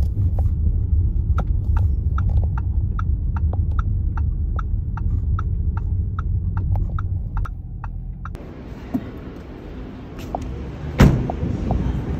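Inside a car's cabin: low engine and road rumble with the turn signal ticking steadily, about two to three ticks a second. After a cut about eight seconds in, a quieter outdoor background and one loud thump near the end, a car door shutting.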